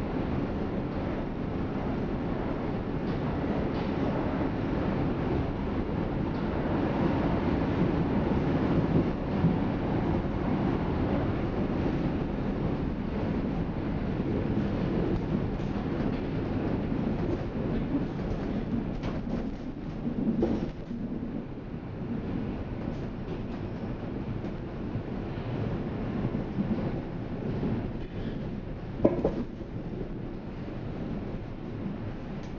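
Berlin U-Bahn F87 train heard from inside the car while running: a steady rumble of wheels and running gear on the track, with scattered clicks. A sharp knock comes near the end.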